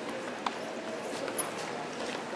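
Footsteps of people walking on stone paving and marble steps, with two sharp shoe clicks, over the steady murmur of a crowd.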